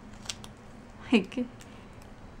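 A few small, crisp clicks and rustles of a paper planner sticker being handled and pressed down with the fingers, with a brief vocal sound from a woman about a second in.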